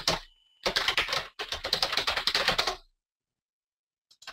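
Typing on a computer keyboard: a quick burst of keystrokes at the start, then a fast, continuous run of keystrokes that stops about three seconds in.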